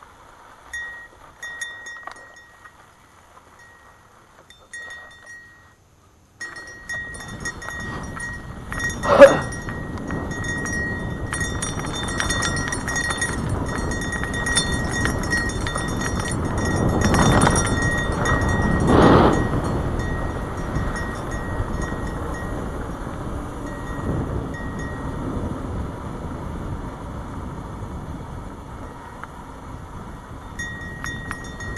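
Wind rushing over a helmet-mounted camera and mountain bike tyres rolling over a rough dirt trail, with rattles from the bike. The first few seconds are fairly quiet, then about six seconds in the noise rises suddenly and stays loud, with one sharp knock a few seconds later and a louder stretch past the middle.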